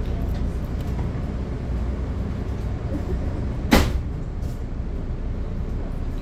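Steady low rumble inside a Budd gallery commuter coach, with one sharp clunk a little past halfway through.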